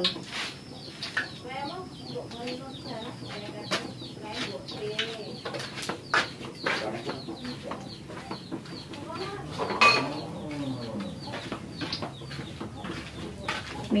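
Domestic chickens clucking, with many short calls scattered through and one louder call about ten seconds in. Occasional light clicks and knocks are heard alongside.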